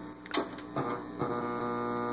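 Hum and tuning noise from a 1941 Howard 435A valve receiver, played through an amplified speaker, as the AM dial is turned. There is a brief crackle about a third of a second in, then a steady buzzy tone comes in and gets louder just past the middle.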